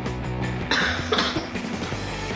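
Background music with steady low notes, and a person coughing twice about a second in while eating.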